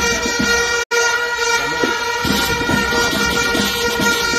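Steady, held horn-like tones at several pitches over a noisy crowd, broken by a sudden brief dropout about a second in.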